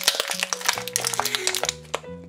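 Clear plastic packaging crinkling and crackling as it is handled, rapid irregular crackles throughout, over background music with steady held notes.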